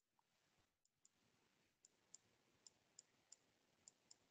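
Near silence, with a run of faint small clicks, a few a second, starting about two seconds in: the clicks of handwriting input on a computer.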